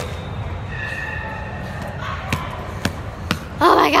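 Steady din of a large, loud indoor sports hall, with three sharp knocks about half a second apart in the second half. A girl's breathless exclamation comes at the very end.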